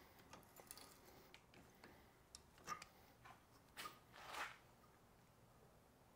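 Near silence with faint scattered ticks and clicks from a hand die stock being turned to cut threads on a metal tube clamped in a vise. There are two slightly louder short scrapes, the second a little after the middle.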